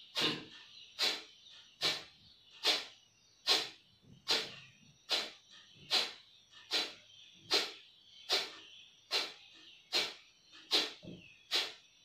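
Kapalbhati breathing: short, forceful exhalations pushed out through the nose, about one every 0.8 seconds in a steady rhythm, some fifteen strokes in all.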